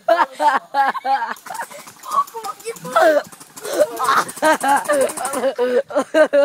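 Excited voices talking and calling out over one another.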